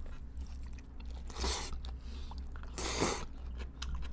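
A person slurping and chewing cold Korean naengmyeon noodles from chopsticks, with two loud slurps about a second and a half apart.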